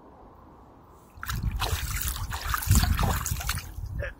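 Lake water splashing and trickling close to the microphone, starting about a second in, irregular, with a low rumble underneath.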